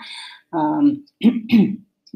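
A woman clearing her throat mid-talk: a short breath, then a few short voiced throat-clearing sounds.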